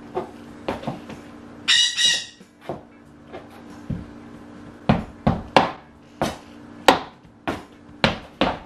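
Stuart Weitzman high-heeled pumps clicking on a wooden floor in irregular walking steps, sharper and more frequent in the second half. About two seconds in there is a brief high squeak, and a faint steady hum runs underneath.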